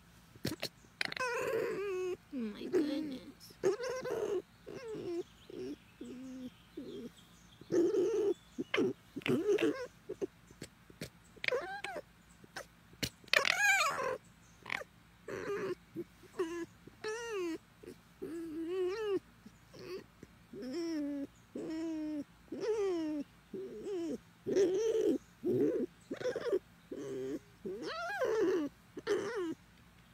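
Red fox whining and chattering in a long run of short, wavering high calls with brief gaps between them as it is stroked.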